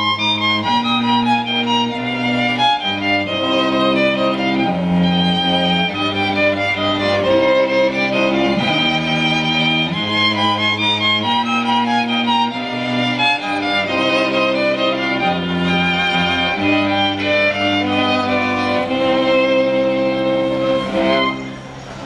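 Folk string band with several fiddles playing a lively folk tune together over low accompaniment chords that change every second or two. Near the end the band holds a final note and the music drops away.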